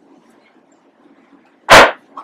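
A single loud bang of a gavel struck on the judge's bench, closing the court, near the end of a quiet room.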